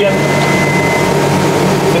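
Steady drone of running machinery with a thin, high, constant whine above it.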